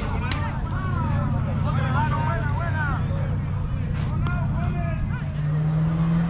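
Players' shouts carrying across a softball field during a live play, with a couple of sharp knocks. A steady low hum runs underneath and grows louder near the end.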